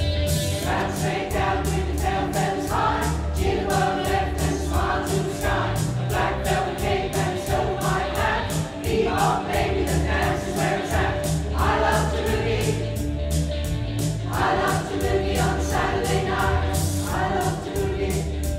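Mixed-voice community choir singing together over a rhythmic accompaniment with a steady beat and bass line.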